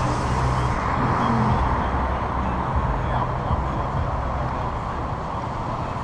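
Wind and road noise on the microphone of a camera mounted on an electric bicycle being ridden, a steady rushing that fades slightly near the end as the bike slows.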